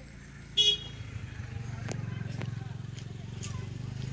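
A short, loud vehicle horn toot about half a second in, followed by a motor vehicle's engine running with a low, steady drone.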